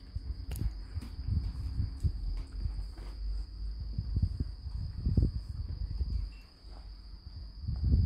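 Irregular low bumps and rustling as a dog moves about and paws on a fleece blanket, with a steady high-pitched whine running underneath.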